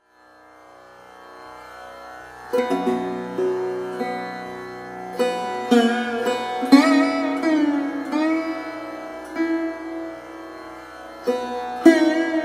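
Instrumental opening of a song: a drone fades in from silence, then a plucked string instrument plays a slow melody with sliding, bending notes, entering loudly about two and a half seconds in.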